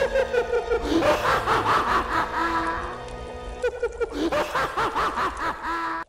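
A man and a woman laughing theatrically in short repeated bursts, a staged mad-scientist laugh, over background music.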